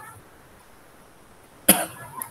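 A single short cough near the end, heard over a video-call microphone.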